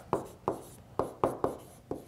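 A stylus tapping and sliding on a tablet screen while handwriting words: about seven sharp, irregular clicks.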